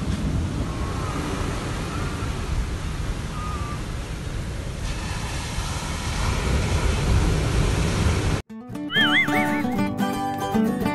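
Wind buffeting the microphone over the rush of ocean surf. About eight and a half seconds in it cuts off abruptly and music starts, with a wavering high tone.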